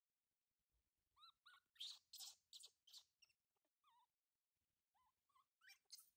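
A baby monkey giving a series of short, faint, high calls that rise and fall in pitch, with a few harsher, noisier cries between them about two to three seconds in.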